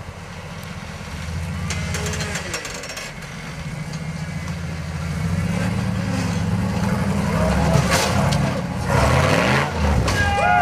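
Rock-crawler buggy's engine working under load as it climbs a vertical rock ledge, revving in swells that rise sharply in pitch near the end as it pulls over the top.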